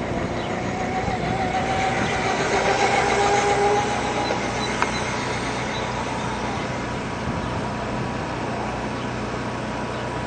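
A small red toy motorbike's motor gives a faint two-tone whine that rises slightly and fades out about four seconds in as it drives away, over a steady background rumble. There is a single click a little before five seconds in.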